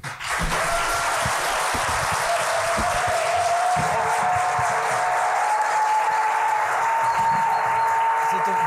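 A large audience applauding steadily, a loud, sustained ovation at the close of a live show. A thin steady tone, gliding slowly upward, sounds over the clapping from about two seconds in.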